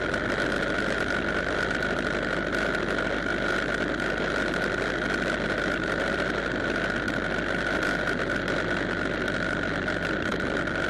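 Motorcycle being ridden at a steady speed: engine and wind noise running evenly, with a constant high whine over it.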